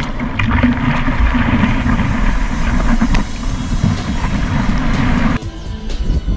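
Loud rushing and splashing of seawater against a surfer paddling on a surfboard, heard on an action camera's microphone at the water's surface, with music underneath. It cuts off abruptly near the end.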